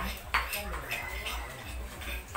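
Kitchen clatter of knives knocking on cutting boards and utensils against bowls as vegetables are chopped, with sharp knocks at irregular intervals, the clearest about a third of a second in. A brief faint ring is heard around the middle.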